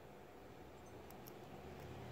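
Faint scratching of a thin metal tool on a small brass switch contact, with a few light ticks about midway, as the blackened contact face that keeps the light from switching on is scraped clean.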